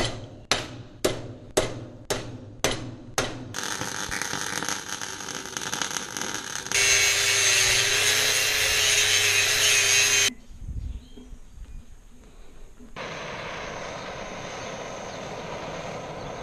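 Metal struck with a hammer about twice a second, each blow ringing, then a steady welding crackle. Then an angle grinder cuts perforated steel sheet with a loud steady whine and cuts off, and near the end a steady hiss starts.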